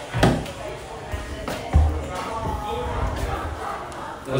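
Background music and indistinct chatter, with two dull thumps, one about a quarter second in and another a second and a half later.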